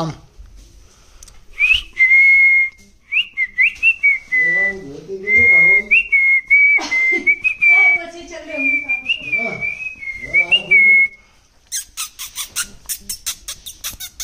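Clear whistling: a held note near 2 kHz broken by short upward chirps, with a low babbling voice-like sound under it for much of the time. Near the end a rapid run of sharp clicks, about seven a second.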